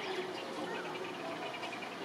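A fast, even trill of short, high chirps, roughly ten a second, starting just after the beginning and running on over a steady background hum.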